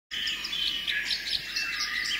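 Birds chirping: many short, quickly repeated calls overlapping in a steady birdsong ambience.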